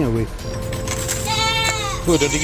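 A goat bleating once, high-pitched, about halfway through, lasting about half a second and dropping in pitch at the end.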